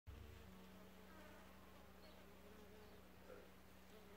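A bee buzzing faintly around borage flowers: a steady low hum.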